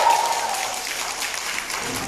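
Audience applauding, many hands clapping, slowly easing off.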